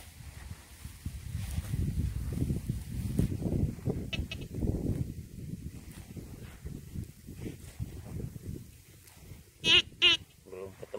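Metal detector target tones as the coil passes over a small dug-up target in dry soil: a short beep about four seconds in, then a louder, sharper double beep at the very end. Before that, low rustling and scraping of the gloved hand and coil against the soil.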